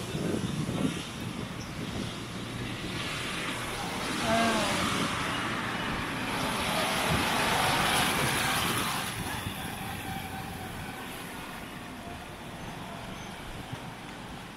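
A vehicle passing by. Its noise swells from about four seconds in, stays loud for several seconds and fades away, over a steady background of street noise.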